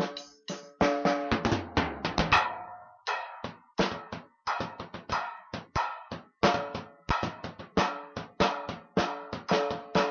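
Acoustic drum kit played in a fast, steady groove of snare and bass drum strikes, several per second, with a busier fill that ends in a loud hit about two seconds in.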